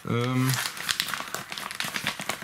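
A paper mailer envelope crinkling and rustling as fingers handle it and pick at its flap to open it, with a short hummed voice sound at the start.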